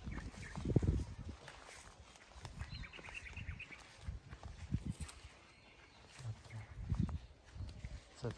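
Footsteps through grass with low thumps and rustling, and a run of faint high chirps about three seconds in.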